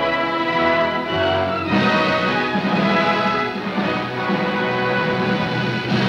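Orchestral film score playing sustained chords, swelling to a fuller passage about two seconds in.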